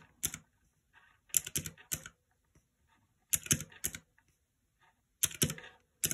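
Round, typewriter-style keys of a pink retro calculator being pressed to add up a column of figures. The clicks come in four quick runs with pauses between them.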